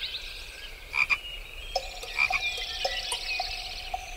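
Outdoor animal calls: a brief call about a second in, then short calls repeating about two to three times a second from a little under two seconds in, over a steady high whine and a fast high trill.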